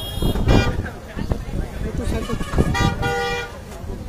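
A vehicle horn sounds one steady honk of about half a second near the end, over the chatter of a large crowd of men talking at once; a shorter, higher-pitched tone sounds right at the start.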